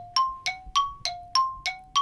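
Two-note chime sound effect: bell-like dings alternating between a low and a high note, about three strikes a second, each ringing briefly before the next, marking dead air.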